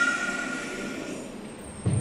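A woman's held sung note trails off at the start, leaving a karaoke backing track playing softly between vocal phrases, with a brief low sound near the end.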